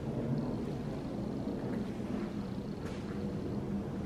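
Steady low background rumble with faint humming tones and no distinct single event.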